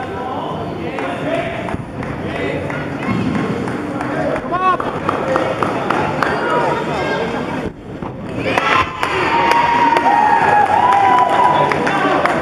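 A spectator crowd in a large gym, chattering and calling out. A short drop-out comes about eight seconds in, and then louder cheering and shouting with some held shrill calls.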